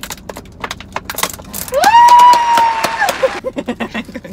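Stiff clear plastic food packaging being pried open by hand, with a string of crackles and clicks. About halfway through, a loud, high-pitched vocal cry rises, holds for about a second and a half, then drops away.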